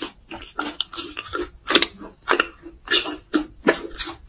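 Close-miked mouth sounds of a person chewing food, with an irregular run of short chews and smacks, several a second, the strongest around the middle and near the end.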